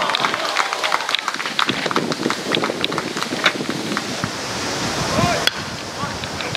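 Baseball spectators shouting and clapping as a live play unfolds, with a single sharp knock about five and a half seconds in.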